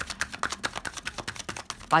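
A deck of tarot cards being shuffled by hand: a rapid, dry run of small card-on-card clicks.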